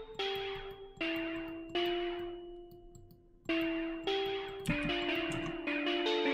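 Omnisphere software synth melody: single pitched notes, each starting sharply and fading out, about one a second, then quicker overlapping notes from about two thirds of the way in.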